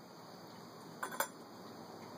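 Two light clinks of a whiskey glass a fraction of a second apart, about a second in, as the dram of bourbon and water is handled.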